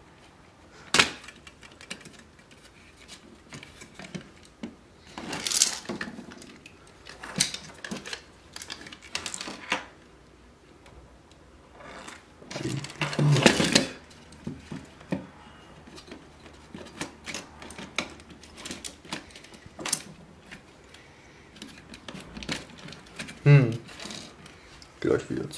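A plastic radio housing being handled and turned over during disassembly: scattered plastic clicks, knocks and rattles, with louder handling noise about five seconds in and again around thirteen seconds.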